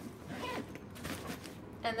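The zipper of a Ju-Ju-Be Mini Be fabric backpack being pulled closed, faint.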